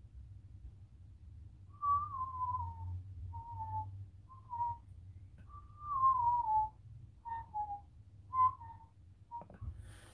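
A person whistling a slow, wandering tune. About eight clear notes, two of them long and sliding downward, the rest short.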